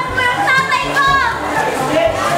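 Teenage students' voices calling out in sliding, wordless shouts, with music playing underneath.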